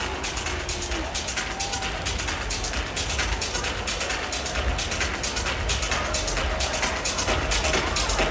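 Electronic dance music from a live DJ set over a large sound system, with a steady beat.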